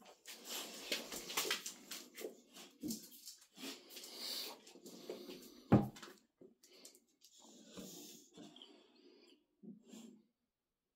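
Bulldog-type dogs breathing and sniffing noisily close by, in short irregular bouts. One short sharp knock comes about six seconds in.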